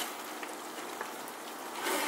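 Ice tipped from a plastic bag into a bucket of water: a soft, steady patter with a couple of faint clicks.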